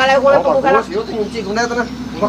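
Speech only: men talking in conversation.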